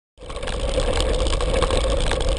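Wind rumbling on the microphone of a camera riding along with a mountain bike over a rough dirt track, with rolling noise and a steady mid-pitched hum, fading up in the first half-second.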